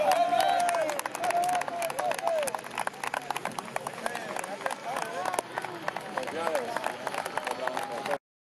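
Scattered hand clapping from a small group of people, irregular and continuous, with men's voices calling out over it.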